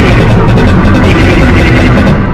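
Loud, dense, steady wall of layered, heavily processed cartoon soundtrack from a scan-style video edit: many overlapping copies piled into one music-like cacophony with no clear words.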